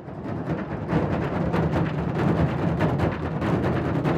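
Afro-Venezuelan San Juan drumming fading in over the first second, then a fast, dense run of deep drum strikes.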